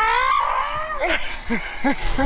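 A child's drawn-out wordless cry, gliding up in pitch and fading about a second in, followed by a few short vocal sounds.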